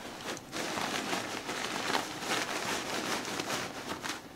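Nylon cushion cover and the plastic air cells inside it rustling and crinkling continuously as a Vicair wheelchair cushion is lifted and handled by hand and air cells are pulled out.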